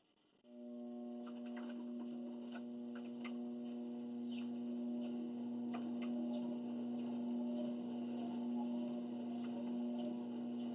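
Treadmill starting up: a steady electric hum comes on suddenly about half a second in and holds at one pitch, with faint light clicks over it.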